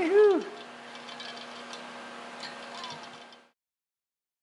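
A short, loud vocal 'whoo' that rises and then falls in pitch, over a steady low hum from the shop. The sound cuts off to silence about three and a half seconds in.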